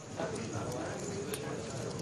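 Clay poker chips clicking against each other: a few light clacks and a sharper one just over a second in, over low background voices.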